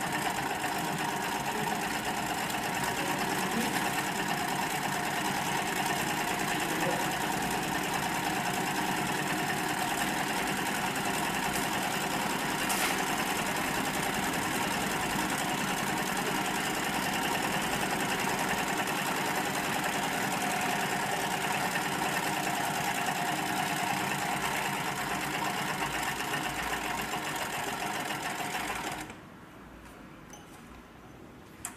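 Hightex single-needle flatbed lockstitch sewing machine with wheel feed, needle feed and a driven roller foot, running steadily while stitching a shoe upper. It stops suddenly about a second before the end.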